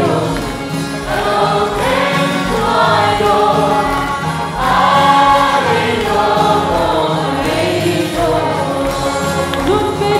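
Gospel worship song sung by a large congregation together with singers on the stage, over a steady bass beat from amplified accompaniment.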